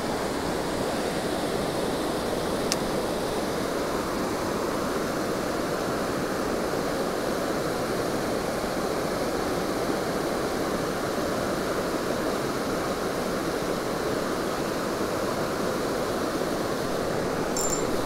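Creek water rushing steadily over a small rocky falls and riffle, an even, unbroken rush.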